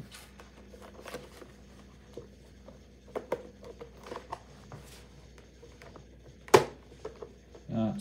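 Small plastic parts of a Magic Mixies crystal ball's misting module being handled and fitted back together: scattered light clicks and taps, with one sharper click about six and a half seconds in.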